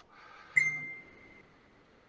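A single short ping about half a second in, with one ringing tone that fades out over about a second.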